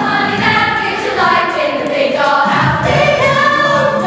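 A group of young girls singing a musical-theatre number together, with held notes that move up and down in pitch.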